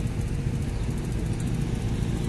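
Road traffic on a busy city avenue: a steady low rumble of car and motorcycle engines in slow, queued traffic.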